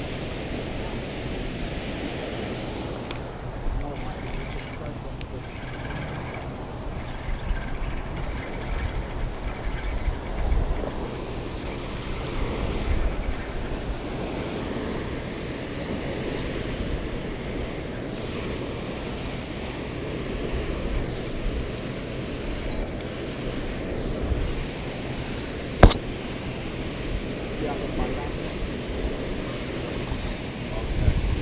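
Steady rush of water pouring through a dam spillway, with wind on the microphone. A single sharp click near the end.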